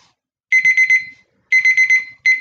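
Digital countdown timer alarm beeping, high-pitched, in quick groups of about four beeps, one group about half a second in and another a second later: the set time for the task has run out.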